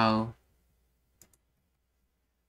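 Two quick computer mouse clicks a little over a second in, the second fainter, advancing to the next flashcard; a voice trails off at the very start.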